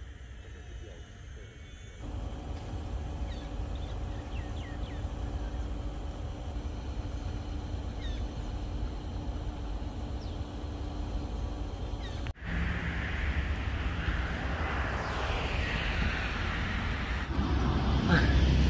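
Outdoor ambience beside a river with a few short chirps, likely birds. About twelve seconds in it cuts to louder, steady rushing noise with a low rumble, typical of wind on the microphone while riding a bicycle.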